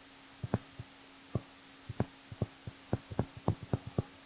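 Stylus tapping and clicking on a pen tablet while handwriting: about fifteen short, light, irregular clicks, coming faster in the last second or so, over a faint steady electrical hum.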